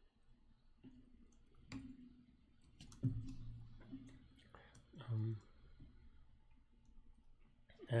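Scattered computer keyboard keystrokes, a few separate clicks while a line of code is typed, with a man's voice humming briefly and low twice, about three and five seconds in.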